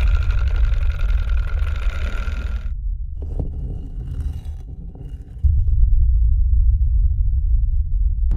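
Deep cinematic rumble of a sound-design drone under the opening titles, with a higher shimmering layer of steady tones over it for the first few seconds. The rumble eases off around three seconds in and swells back up at about five and a half seconds.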